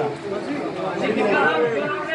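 Several people talking at once: background chatter of voices.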